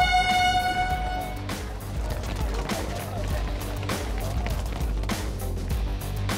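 A race-starting air horn sounds one long, steady blast that signals the start and cuts off about a second and a half in. Background music with a steady beat follows.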